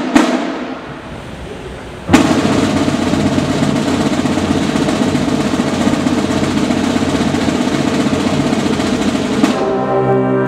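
Marching band drumline playing a sustained snare drum roll that starts suddenly about two seconds in, after a brass chord cuts off at the start and rings away in the gym. The brass comes back in near the end.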